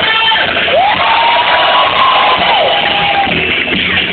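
Live rock band with electric guitars and drums playing loudly, with a crowd cheering. A single held note slides up about a second in and falls away near three seconds.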